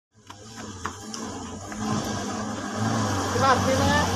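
Light truck's engine running as the truck drives toward the listener, growing steadily louder as it approaches. A person's voice is heard briefly near the end.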